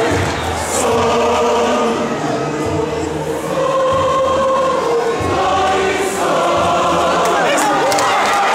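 Large mass choir singing in several parts, holding sustained chords that shift every second or so, heard through a rough, poor-quality recording.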